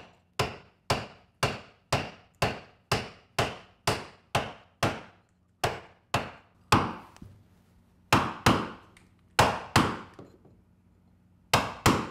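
Small wooden mallet striking a caulking iron, driving caulking cotton all the way into a plank seam of a wooden boat hull on the second pass. Sharp, steady strikes about two a second for the first half, then slower strikes, mostly in pairs, with short pauses between.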